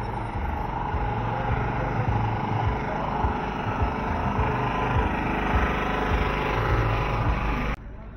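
Wind rumbling and buffeting on the microphone of a camera moving along a street, over the running noise of a motorbike and passing traffic. It cuts off suddenly near the end.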